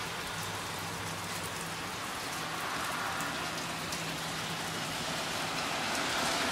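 Steady rain pattering on a wet porch, a continuous hiss with scattered drip ticks as water drips down from the roof and drain pipes onto the wooden deck.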